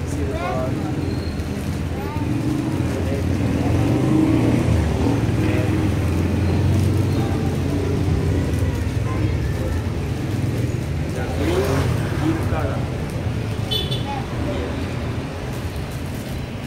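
Small plastic bags of fishing lures crinkling as they are handled and opened, over a steady low rumble.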